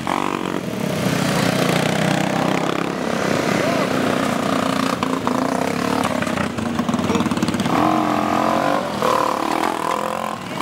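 Quad-bike engines revving as the quads pull away from a standing start one after another, the pitch rising and falling through the run.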